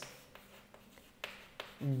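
Chalk writing on a blackboard: a few faint scratches and taps of the chalk as a formula is written.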